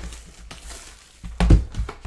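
Cardboard boxes of trading cards being handled and shifted on a cloth-covered desk, with a few knocks and one loud thump about a second and a half in.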